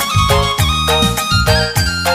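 Karo gendang keyboard music, traditional Karo dance music played on an electronic keyboard. A steady beat of about four hits a second runs under a repeating bass figure and a held lead melody line, with no singing.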